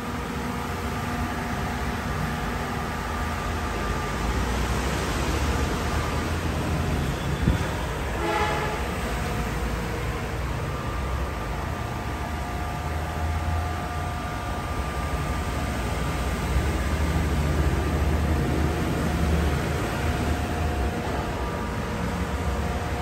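Steady low machine hum with a faint constant whine above it. About eight seconds in comes a short pitched sound of several tones.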